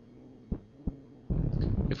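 Faint steady hum with two short, soft low thumps about half a second apart, then a louder steady rush of low noise in the last half-second, running into a man's voice at the very end.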